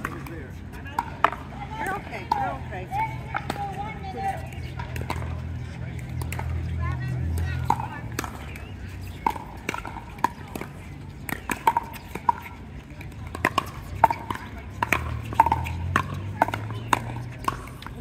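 Pickleball paddles striking the hard plastic ball back and forth in a long rally: a string of sharp pops, roughly one a second and sometimes closer together. Faint voices and a low steady hum run underneath.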